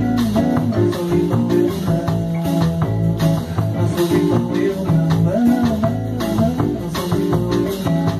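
Bossa nova played by a small band with no vocals: violão (nylon-string acoustic guitar) chords over a walking double bass and a drum kit, keeping a steady groove.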